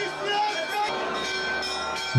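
Church bells ringing, with a crowd's voices beneath them.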